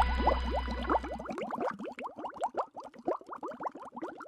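The sustained chords and bass of the outro music stop about a second in, leaving a quick run of short rising bubbly blips, a bubbling sound effect, that grows fainter toward the end.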